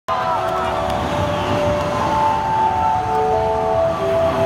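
Held electronic tones from a concert PA, changing pitch every second or so, over the steady noise of a crowd in a large hall.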